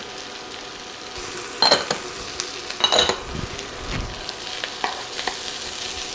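Ground beef, onions and green bell peppers sizzling steadily in a skillet, with a few sharp knocks and scrapes of a wooden spoon stirring against the pan, the loudest about a second and a half and three seconds in.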